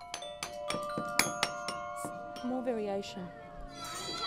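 Glockenspiel-like mallet percussion: single bright notes struck one after another at different pitches, each ringing on. A short voice-like sound slides in pitch about two and a half seconds in.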